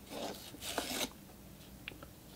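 A sheet of printer paper rustling as a hand slides it across the tabletop, in two short strokes within the first second.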